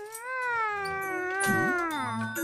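A cat's long yowl at night: one drawn-out call that rises a little and then slowly sinks in pitch.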